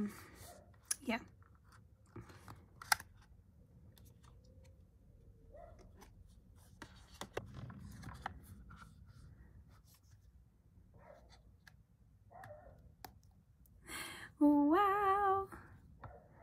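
Faint scattered clicks, taps and rubbing as an iPhone 13 Pro Max is handled and pressed into an Apple silicone case. A short hummed "mm" near the end.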